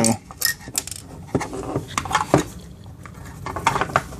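Hard plastic clicks and knocks as the plastic housing of an ionic air purifier is handled and pressed on, a handful of short scattered taps.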